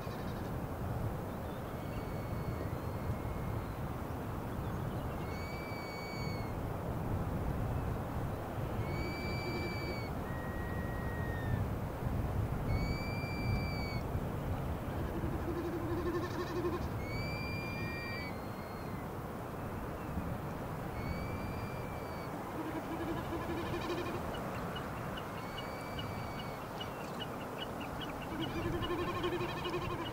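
Field recording of a bird's short, arched whistled call repeated about every four seconds over a steady low rushing background, with a few lower, shorter calls in between.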